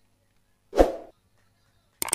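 A cricket bat strikes a tennis ball once: a single sharp crack with a short tail, a little before the middle.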